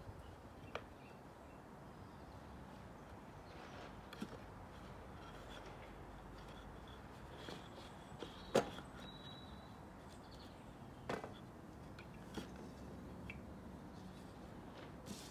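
A few scattered, separate sharp wooden knocks over a faint steady background, the loudest a little past halfway: loose pieces of a pine nest box being handled and set down on a wooden workbench.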